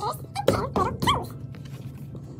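A woman's voice reading a children's picture book aloud, played back at twice normal speed so it comes out fast and high-pitched. It is strongest in the first second or so, then fainter.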